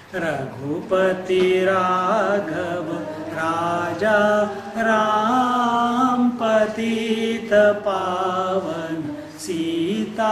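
A man chanting a devotional invocation solo in long, slow melodic phrases with held notes and breaths between them, over a steady low drone.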